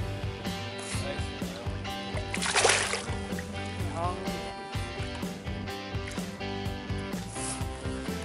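Background music with a steady beat, with a brief burst of noise about two and a half seconds in.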